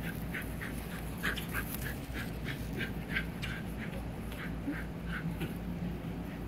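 Young puppies crying in a quick, steady series of short, high squeaks, about three or four a second, over a low, steady background hum.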